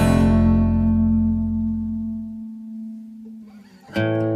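Song accompaniment: a strummed guitar chord rings out and fades away over about three seconds, then the strumming comes back in right at the end.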